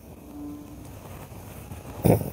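Quiet room after the chanting stops, with faint rustling as monks prostrate on the floor, and a brief faint hum about half a second in.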